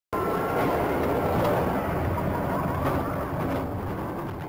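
A vehicle on rails rumbling and clattering along its track, fading out near the end.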